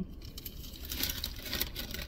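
Paper fast-food packaging crinkling and rustling as it is handled, a dense run of small irregular crackles.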